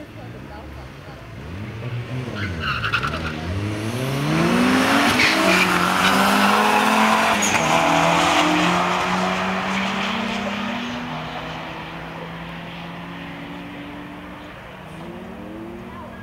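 Turbocharged Mazda Miata with a swapped-in BPT engine launching and accelerating hard down a drag strip. The engine note climbs in pitch through the gears, dropping at each shift, and is loudest about five to nine seconds in. It then fades as the car runs away down the track.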